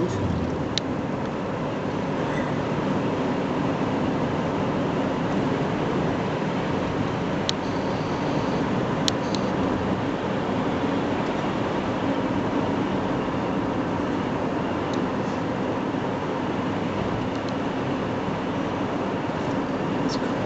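Steady road and engine noise heard inside the cabin of a moving car, with a few faint clicks.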